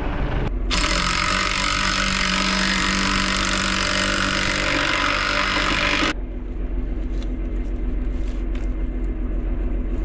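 A large tracked tractor's engine running steadily. A loud, steady hiss starts suddenly about half a second in and cuts off suddenly about six seconds in.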